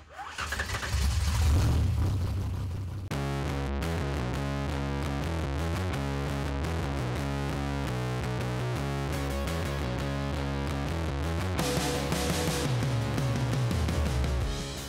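A drag car's carbureted race engine running with a loud, uneven low rumble for about three seconds. Then rock music with guitar cuts in suddenly and carries on to the end.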